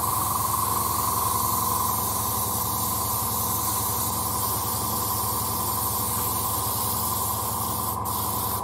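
Airbrush spraying: a steady, unbroken hiss with a low hum underneath.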